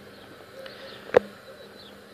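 Quiet outdoor background with a faint steady hum, and a single short, sharp click a little over a second in.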